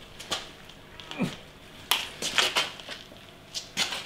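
A few short, sharp clicks and knocks, about six spread irregularly, as a lever or part on an old cast-iron electric machine is handled and moved; the machine's motor is not running.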